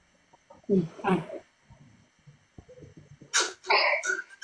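A person's voice in two short bursts about a second in, then a sudden loud breathy burst, like a sneeze or a sharp exhale, near the end.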